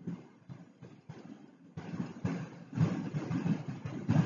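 Low, uneven rumble in the background, like a running engine, growing louder about two seconds in.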